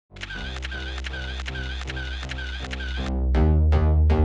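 Intro music over a steady bass line, with camera-shutter clicks falling on the beat about two and a half times a second. About three seconds in, it gives way to a louder, heavier beat.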